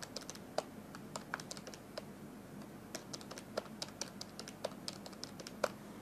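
Faint, irregular clicks of buttons being pressed on a handheld calculator, several a second, as a column of figures is added up.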